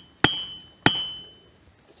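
Two sharp hammer blows, about a quarter second and just under a second in, on a liquid-nitrogen-cooled 7018 mild-steel welding rod resting on an anvil. Each blow leaves a high ringing note from the anvil that fades away, and the ring of a blow just before is still dying at the start. The frozen rod bends rather than shatters.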